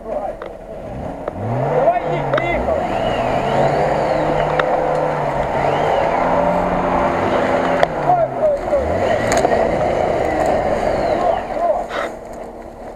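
Jeep Wrangler Rubicon's engine revving hard under load as it drives through deep mud, its pitch climbing about a second in, holding, then dipping and climbing again near the end. A steady rushing noise of tyres churning the mud runs underneath.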